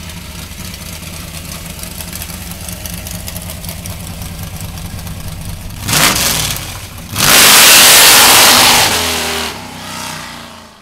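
Supercharged 521-cubic-inch Ford 460-based V8 with an 8-71 blower and twin Demon carburetors, idling steadily, then blipped once about six seconds in. It then revs hard as the rear tires spin and smoke for about two seconds, fading as the car pulls away.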